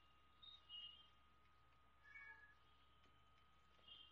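Near silence: room tone with a faint steady high hum and a few very faint, brief high-pitched squeaks.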